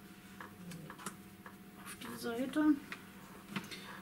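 Light clicks and rustles of a folded cardstock pop-out card being handled, with a brief murmured word or two a couple of seconds in.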